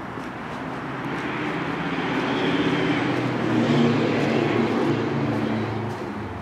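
A passing vehicle's engine, growing louder to a peak about four seconds in and then starting to fade.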